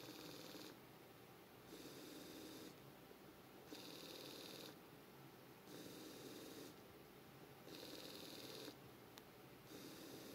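Two small electric motors on a DRV8833 motor driver under Arduino control, faintly whirring with a high whine. They run in bursts of about a second and pause about a second between them, repeating every two seconds: the on-off cycle of a motor test program.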